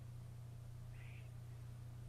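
Quiet room tone with a steady low electrical hum, and one faint, short chirp about halfway through.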